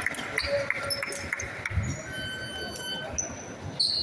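Chatter of players and spectators echoing in a sports hall, with short high squeaks of sneakers on the court floor and one held high tone lasting about a second midway.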